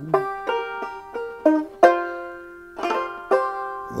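Banjo picked alone between sung lines: about eight single plucked notes, unevenly spaced, each ringing briefly and fading, the loudest about two seconds in. A sung word trails off at the very start.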